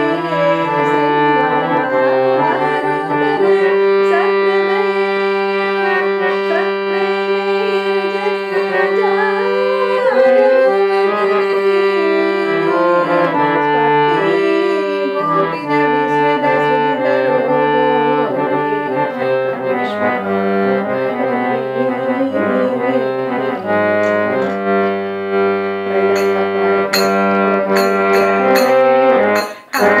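Harmonium playing a bhajan melody in held, chord-like reed notes that change pitch in steps. Sharp clicks come in near the end.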